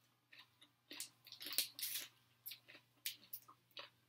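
A person chewing food close to the microphone: short wet smacks and clicks at an irregular pace.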